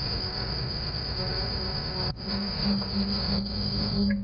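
Old film soundtrack music for a dance number, under a steady high-pitched whine and hiss. About halfway there is a brief break, then a held low note pulses on.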